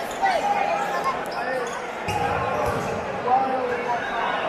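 Sports-hall ambience during a futsal match: players' and spectators' voices echoing in a large gymnasium, with the sounds of play on the court and a low thudding about two seconds in.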